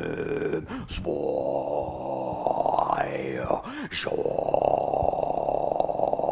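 A man making long, rough, droning vocal sounds without words, as stage sound effects in a performance. There are two long stretches, with a short swoop up and down in pitch between them.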